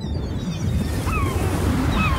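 Seaside soundscape of surf washing with a low wind rumble. Gulls call over it: a short cry falling in pitch about a second in, and another starting near the end.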